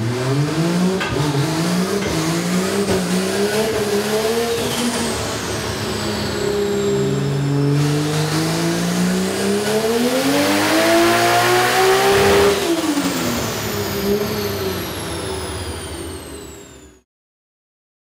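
Turbocharged Toyota 2JZ-GTE inline-six in a Scion FR-S race car revving under load on a chassis dyno: the revs climb, ease off about five seconds in, then climb again in a long pull. At the peak, about twelve and a half seconds in, the throttle closes and the revs fall, with a high whine dropping away, until the sound cuts off abruptly about a second before the end.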